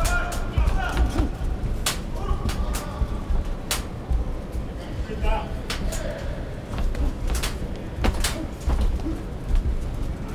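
Boxing arena sound during a bout: a steady bed of crowd voices and shouts, with about a dozen sharp knocks at irregular intervals.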